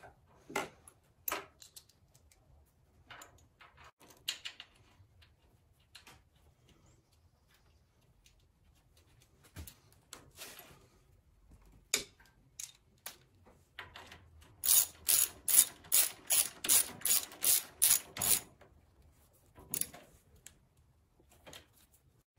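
Hand socket ratchet clicking in a quick even run of about a dozen clicks past the middle, as a bolt is run in on a motorcycle fuel tank mount. Scattered light clicks and taps of tools and metal parts come before and after.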